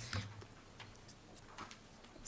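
Low room tone with a few faint, scattered ticks and light knocks, the small handling sounds of people moving at a panel table and podium.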